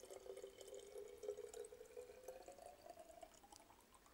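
Water poured from a glass beaker into a 250 ml glass conical flask, faint, its pitch rising steadily as the flask fills.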